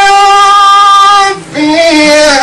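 A male Quran reciter's voice holding one high, steady melodic note for about a second and a half, then a brief break for breath and a new phrase beginning on a lower pitch.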